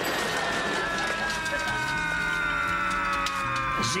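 A long whistling tone that falls slowly in pitch over a steady noisy background, like a comic sound effect for something falling from the air after an explosion.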